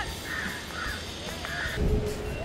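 Crows cawing, about three short harsh caws, with a low thump near the end.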